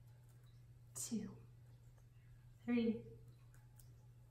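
A woman speaking softly, two short words about a second in and near three seconds, over a steady low hum.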